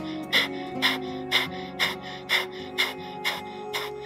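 A person doing Kundalini breath of fire: quick, forceful nasal exhales in a steady rhythm, about two a second, over soft background music.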